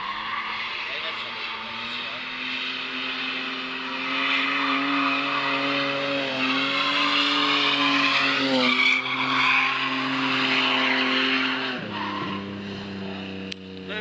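A drift car's engine held at high revs while its tyres squeal and hiss, sliding sideways through a bend. The sound builds over the first few seconds and is loudest in the middle. The engine pitch dips briefly about two-thirds of the way through and falls away near the end as the car moves off.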